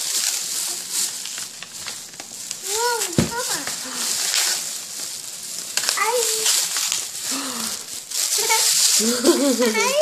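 Thin plastic bag rustling and crinkling as a small child rummages in it. The child's short voice sounds come in a few times, about three seconds in, about six seconds in and near the end.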